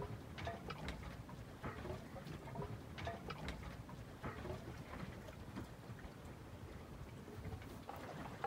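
Quiet water lapping against a sailing yacht's hull as it drifts in near calm, with soft irregular splashes and ticks over a faint low wind noise.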